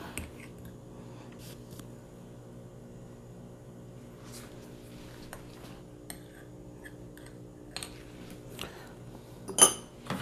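Metal teaspoon clinking and tapping against a ceramic teacup while sugar is spooned into tea, in scattered light knocks with the loudest clink near the end, over a steady low hum.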